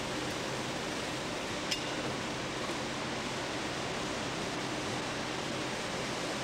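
Steady running noise and low hum of a candy-factory mixer stirring hot boiled-sugar mass with peppermint flavouring, with one small click about two seconds in.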